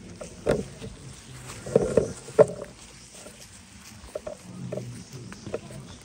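Footsteps crunching and rustling through dry fallen leaves, uneven, with the loudest crunches in the first two and a half seconds.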